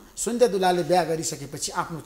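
Speech only: a man talking in Nepali.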